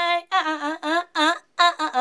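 A woman's solo voice singing unaccompanied, close to a studio microphone. A held note with vibrato ends just after the start, followed by several short sung phrases with brief silent gaps between them.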